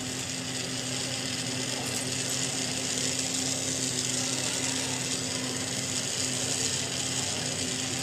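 Lampworking bench torch flame hissing steadily, with a constant low hum underneath.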